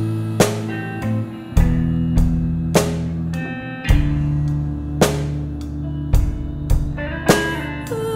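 Slow instrumental rock passage with no singing: guitar and held bass notes over sparse drum strokes that come roughly once a second.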